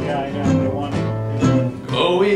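Acoustic country-folk band playing an instrumental passage on strummed acoustic guitars and mandolin, the chords struck about twice a second.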